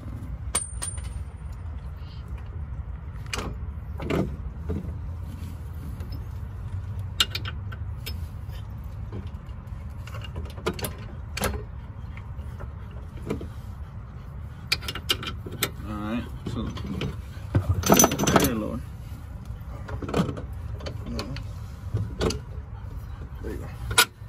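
Scattered metallic clicks and knocks as a coilover strut is worked into the steering knuckle and its first bolt is fitted, over a steady low hum, with the busiest clatter about eighteen seconds in.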